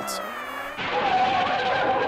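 A cartoon yell that sags slightly in pitch. A little under a second in it gives way to a steady, noisy tyre screech as a bus skids to a stop.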